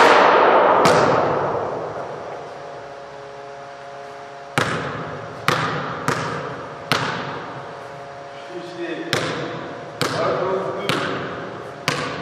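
A basketball striking the backboard and rim with a loud bang that rings out through the hall for a couple of seconds. It is followed by single bounces of the ball on a hardwood gym floor, about one a second and irregular, each echoing.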